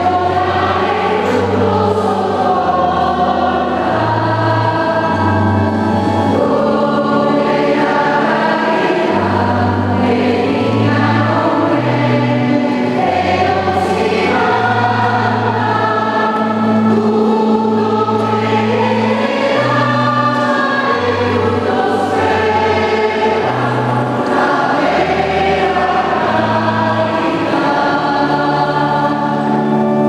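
Mixed church choir of men and women singing a hymn during Mass, over held low bass notes from an organ accompaniment.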